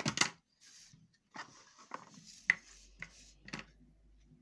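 Sharp clicks and taps of a plastic glue stick and paper being handled on a wooden table, about one every half second.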